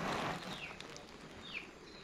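Brief rustling noise at the start, then a small bird gives two short, falling chirps about a second apart.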